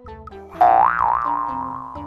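Children's background music with short plucked notes, and about half a second in a cartoon "boing" sound effect: a loud wobbling tone that rises, warbles and fades out over about a second and a half.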